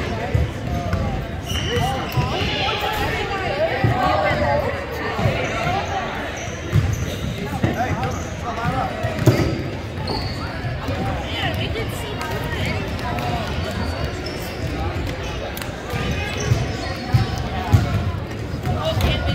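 Basketballs bouncing on a hardwood court in irregular knocks, among the chatter of many voices.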